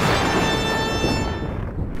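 Spooky music sting: the tail of a deep boom, then a ringing, many-toned chord over a low rumble that fades away near the end.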